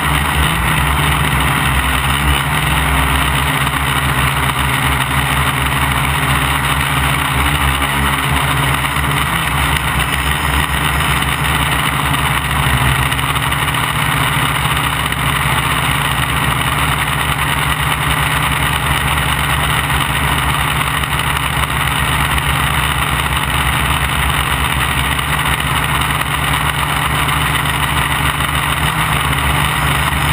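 Gaui 500X quadcopter's brushless electric motors and propellers running steadily in flight, heard close up from a camera mounted on its frame, as a steady hum made of several held tones.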